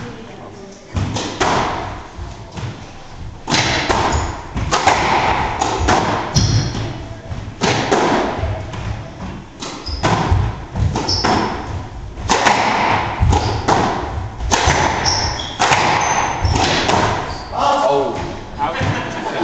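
Squash rally: the ball is struck by rackets and thuds off the court walls roughly once a second, starting with the serve about a second in and continuing through the rally, in a large hall.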